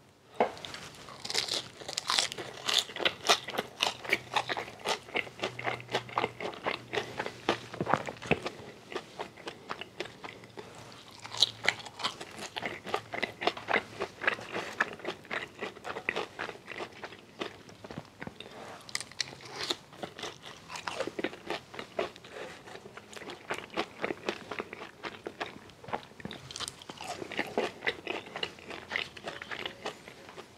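Close-miked chewing of french fries dipped in gravy: a dense run of crunches and chewing sounds, thinning briefly a few times.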